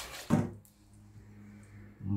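A single short knock about a third of a second in, then quiet room tone with a faint steady low hum.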